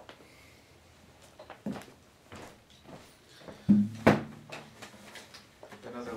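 Handling noise as a person sits down in a wooden chair with an acoustic guitar: scattered knocks and bumps, the two loudest about three and a half and four seconds in, the first followed by a brief low ring.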